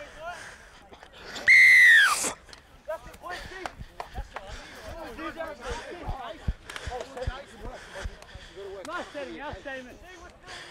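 A referee's whistle blown once in a single clear blast of under a second, about one and a half seconds in, dropping in pitch as it stops. Scattered voices of players and spectators and a few low thumps follow.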